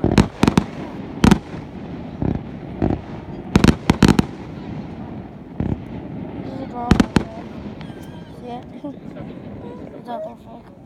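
Aerial fireworks bursting in a string of sharp bangs. Some come singly, with a quick run of about four around four seconds in and a close pair about seven seconds in.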